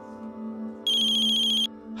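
Mobile phone ringing with a high, trilling electronic ringtone. After a short pause, one ring a little under a second long starts about a second in, over steady background music.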